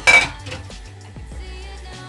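A brief, loud clatter of kitchenware right at the start, over a steady background pop song.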